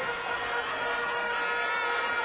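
Live concert sound between vocal lines: the backing music's steady held tones over an even wash of crowd noise.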